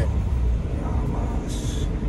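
Cabin noise of a Suzuki Jimny JB64 on the move: its 658 cc turbocharged three-cylinder engine and the road make a steady low rumble. A brief hiss comes near the end.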